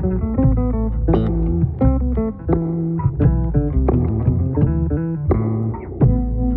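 Instrumental music led by bass guitar: quick plucked melody notes and chords over a low, sustained bass line.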